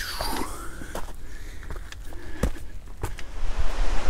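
Wind rumbling on the microphone outdoors, with a few sharp clicks of footsteps on rock in the second half.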